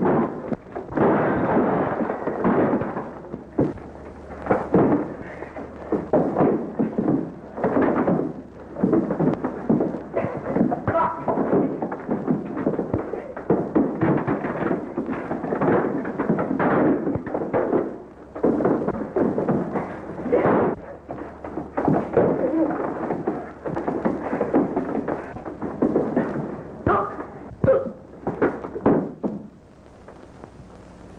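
A screen fistfight in an old film: a long run of punches, thuds and crashes of bodies and furniture, coming thick and fast with only brief lulls.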